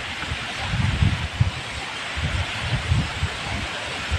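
Wind buffeting the microphone in irregular low rumbling gusts, over a steady hiss of rough surf breaking on the shore.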